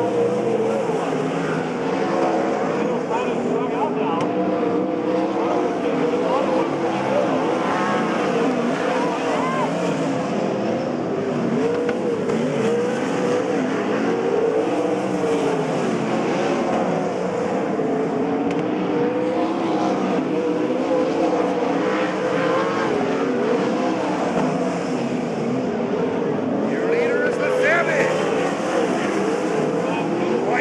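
Several winged sprint cars' V8 engines running hard in a race on a dirt oval, their pitch rising and falling continuously as the cars lap past and throttle on and off through the turns.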